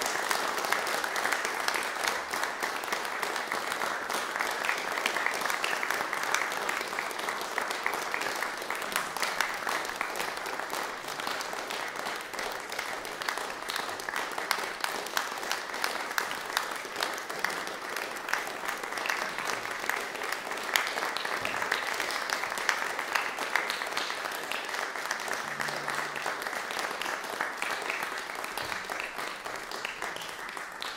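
Concert audience applauding steadily: a dense mass of hand claps that holds throughout and begins to die away at the very end.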